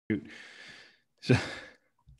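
A man's audible exhale, a short breathy sigh lasting under a second, followed by a drawn-out, breathy spoken "So".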